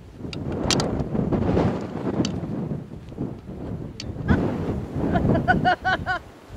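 Wind buffeting the microphone, with scuffling and a few knocks. Near the end comes a quick run of short, high-pitched vocal sounds, about five a second.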